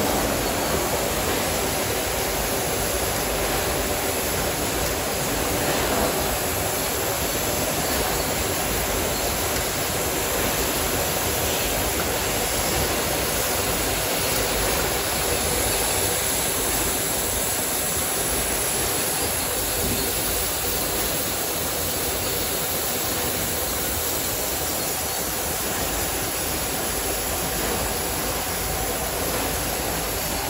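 Steady machine noise of a running bottle packaging line (unscrambler, conveyors and sleeve applicator), an even rushing din with no distinct beat or tone.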